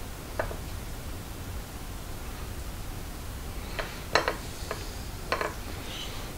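Knife blade clicking against a ceramic plate while cutting through soft chocolate fudge: one click about half a second in, then a cluster of clicks from about four to five and a half seconds in, the loudest just after four seconds.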